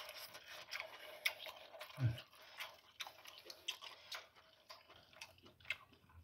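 Close-up chewing of meat: faint, irregular wet mouth clicks and smacks, several a second, with one short low hum about two seconds in.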